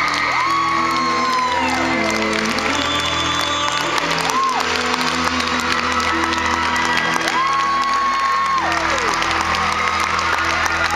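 Live concert music: a male pop singer holds long, high sustained notes over soft sustained band accompaniment in a slow Christmas ballad, with a crowd cheering and whooping underneath.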